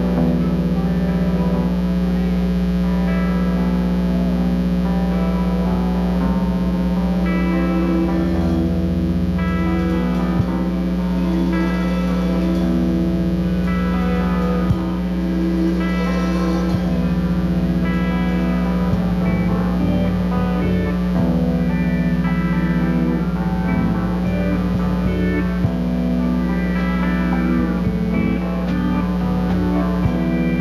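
Live band playing an instrumental passage led by electric guitar, with pedal steel guitar in the band, over a steady low hum.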